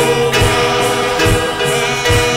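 A group singing a gospel worship song together, with long held notes over a low beat that comes about twice a second.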